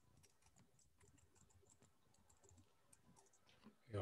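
Faint typing on a computer keyboard: a run of soft, irregular key clicks.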